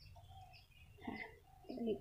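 Faint bird calls in the background: a couple of low calls and a few short high chirps.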